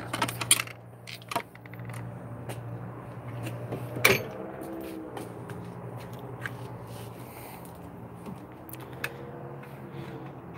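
Scattered metal clicks and clinks from steel sockets and the drawers of a steel tool cart being handled, with one sharper knock about four seconds in, over a steady low hum.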